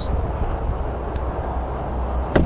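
Steady outdoor background noise: a low rumble with a hiss over it, and one faint short tick about halfway through.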